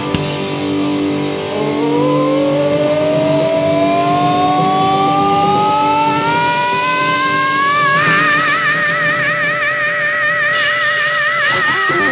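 Live hard rock band: over sustained chords, a wordless sung wail rises steadily in pitch for several seconds, then holds a high note with wide vibrato. Cymbals come in near the end.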